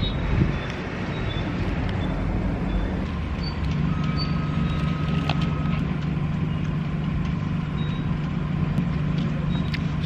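Steady motor-vehicle noise, with a low engine drone that grows stronger about three and a half seconds in and holds, like a truck idling nearby.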